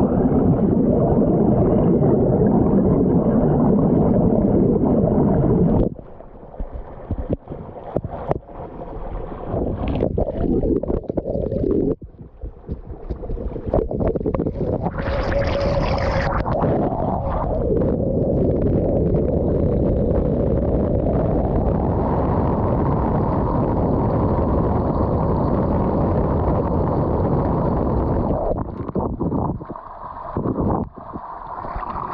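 Bubbling, flowing stream water recorded from underwater: a dense, low rushing and gurgling. It drops away suddenly about six seconds in, returns unevenly, and then runs steadily through the second half.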